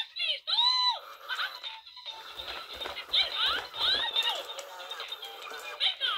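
Mickey Baila y Baila animatronic Mickey Mouse toy playing its recorded high-pitched Mickey voice with music through its small built-in speaker, thin and tinny, kinda quiet.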